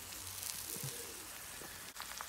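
Pork chops sizzling faintly in their honey glaze in a hot cast iron skillet over charcoal.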